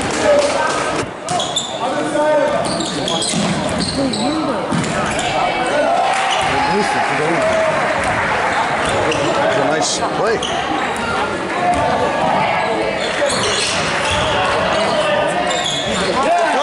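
A basketball bouncing on a hardwood gym floor during play, under the steady chatter and shouts of a crowd of spectators in the gym.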